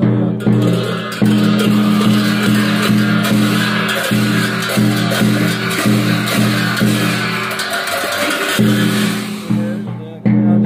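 Tibetan Buddhist monks' deep group chanting, sung on steady low tones that hold and break, with large Tibetan hand cymbals (rolmo) clashed and left ringing over it.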